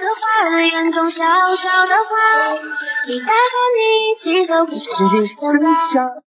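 Background music with a high-pitched, child-like singing voice holding notes that step up and down.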